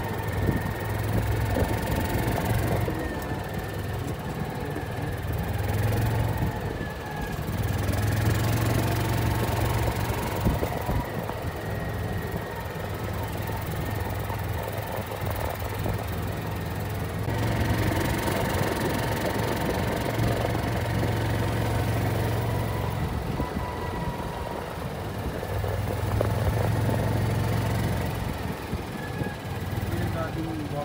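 Golf cart running along a cart path: a steady low hum that swells and eases every few seconds, with a thin whine that comes and goes.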